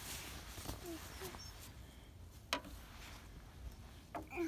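Quiet outdoor ambience with a low wind rumble on the microphone. The toddler makes a few faint, short voice sounds in the first second and a half, and there is a single sharp click about two and a half seconds in.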